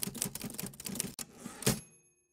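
Typewriter sound effect: rapid keystrokes clattering, with one louder strike near the end followed by a ringing bell that carries on as it fades.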